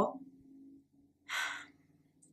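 A woman's short audible breath in, about midway through, after her last spoken word trails off.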